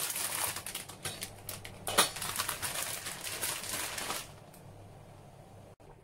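Water heating to a boil in a stainless steel pot on an induction hob: a dense, rapid crackling of bubbles that drops away suddenly about four seconds in, with one sharp knock about two seconds in.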